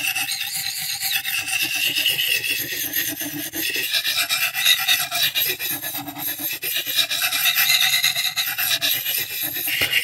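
Steel knife edge scraping back and forth over the unglazed ceramic foot ring on the bottom of a coffee mug, a continuous rasping that swells and fades with each stroke. The ceramic is grinding steel off the edge and sharpening it.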